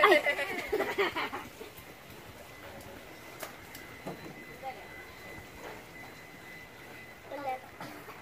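People talking briefly at the start, then a low background with faint distant voices and a few more words near the end.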